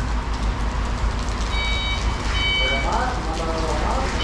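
Steady rain falling on the yard and vehicles, with a reversing truck's back-up alarm beeping twice near the middle over a low engine hum.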